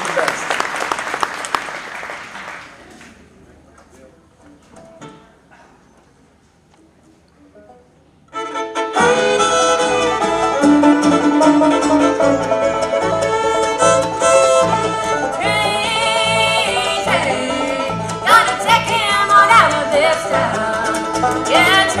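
Audience applause dying away over the first few seconds, then a quiet moment, then a bluegrass band kicks off an instrumental intro about eight seconds in: fiddle, banjo, mandolin and acoustic guitar over upright bass, played at a driving pace.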